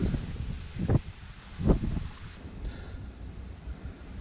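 Two short knocks, a little under a second apart, as battery terminal clamps are pressed down onto the posts of a car battery, over a low wind rumble on the microphone.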